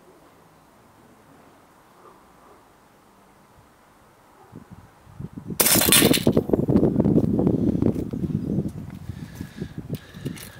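A spring air rifle shot about five and a half seconds in: one sharp crack as the pellet strikes a die-cast toy bus and knocks it over. The crack is followed by a few seconds of loud rustling and clatter that dies away.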